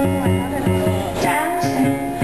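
Yamaha electric stage piano played live in a song, with a steady pulse of repeated chords in the low register and a melody above.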